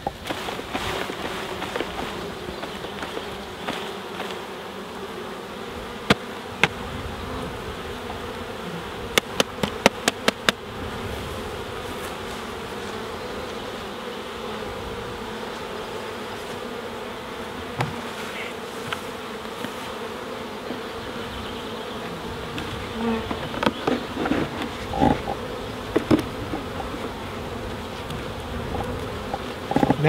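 Honeybees buzzing in a steady hum around an open nuc box after being shaken off a frame. A quick run of sharp taps comes about nine seconds in, with a few more scattered knocks later.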